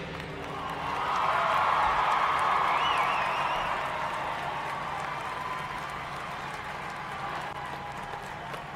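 Arena crowd applauding and cheering at the end of a marching band's show, the cheer swelling about a second in and slowly fading, with a wavering high whoop near the middle.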